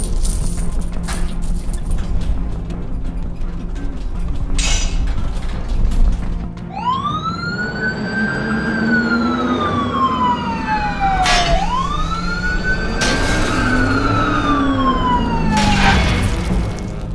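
Police siren wailing in two slow cycles, each rising and then falling in pitch, starting about six and a half seconds in, over background music. Before it come a few sharp crashes.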